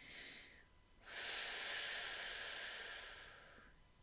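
A woman breathing slowly and deeply: a short breath, then a long breath of about two and a half seconds that fades away. It is a calming breath as she comes out of a meditative state.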